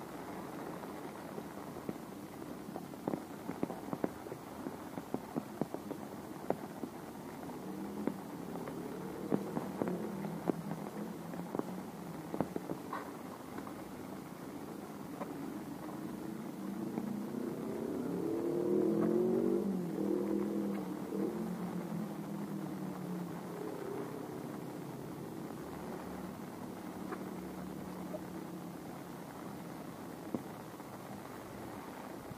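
A motor vehicle's engine comes in, grows louder to a peak just past the middle, then fades as it passes by, its pitch rising and falling. Light scattered clicks from footsteps on a wet concrete path run through the first half.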